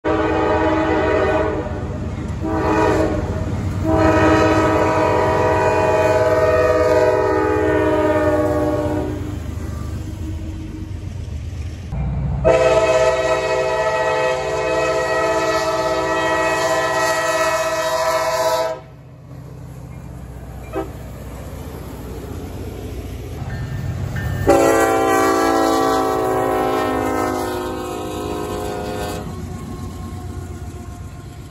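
Diesel locomotive air horns sounding in a series of long blasts, several seconds each, over the low rumble of a passing train. The sound cuts abruptly between clips several times.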